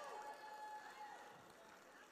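Near silence: faint hall room tone with faint, distant voices.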